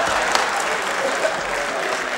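Theatre audience applauding steadily, with faint voices heard over the clapping.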